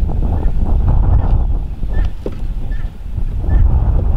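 Wind buffeting the microphone, a loud, continuous, gusty rumble.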